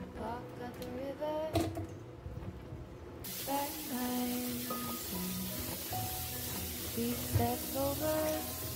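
Melodic background music. About three seconds in, a kitchen tap starts running with a steady hiss of water onto button mushrooms in a plastic salad-spinner basket.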